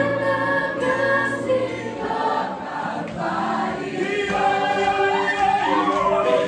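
Live gospel praise music: a worship team singing together in chorus over keyboard accompaniment.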